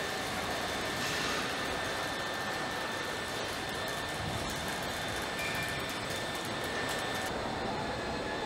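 Steady machinery noise of a car assembly line, where overhead conveyors carry car bodies: an even drone with faint steady high whines and scattered light clicks.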